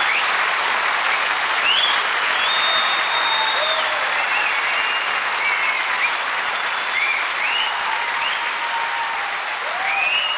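Live concert audience applauding and cheering, a dense steady clapping with scattered whistles and shouts, easing off slightly toward the end.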